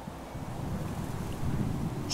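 Wind rumbling on the microphone, a low, uneven buffeting that grows louder.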